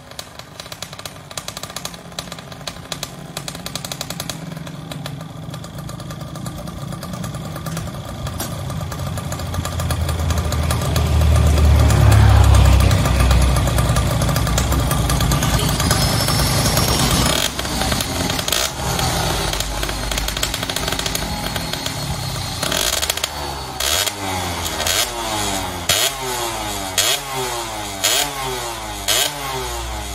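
Two-stroke Yamaha underbone engine of a modified grasstrack motorcycle running and being revved, building to its loudest about twelve seconds in. Near the end the throttle is blipped about once a second, each rev falling away before the next.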